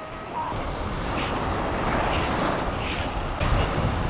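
Wind rumbling on the microphone over small waves washing onto a sand and gravel beach, with a few short swishes of gravel shaken in a plastic sieve basket.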